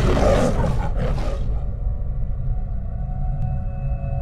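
MGM logo lion roar, given twice in quick succession, the first roar longer, ending about a second and a half in. Underneath runs a low rumbling drone of film music, which carries on with steady held tones after the roar.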